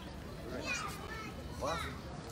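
Children's voices calling out twice, short and high-pitched, over quiet street background.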